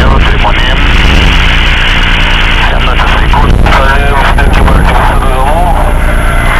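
Power-electronics harsh noise: a loud, saturated wall of distorted noise over a heavy low drone, with a heavily distorted voice breaking through in snatches.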